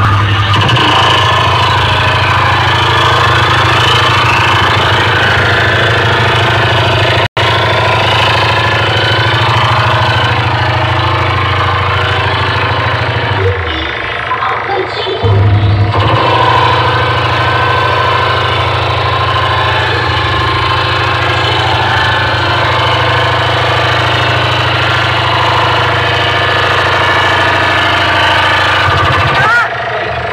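Very loud music from street DJ sound systems, dominated by a steady heavy bass drone. The bass drops out for about two seconds near the middle.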